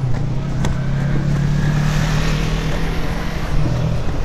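A motor vehicle engine running close by with a steady low hum over city street traffic noise; the hum cuts off suddenly at the end.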